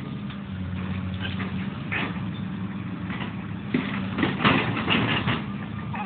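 Excavator diesel engine running steadily while it tears up trees and brush, with sharp cracks and knocks about two seconds in and again several times from about four seconds.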